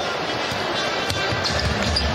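A basketball being dribbled on a hardwood court, a few faint thumps, over steady arena crowd noise with music playing in the arena.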